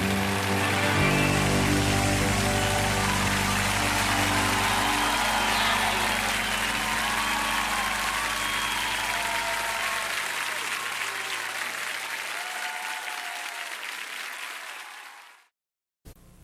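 The end of a live song recording: the final chord is held under audience applause and cheering, and everything fades out to silence about fifteen seconds in.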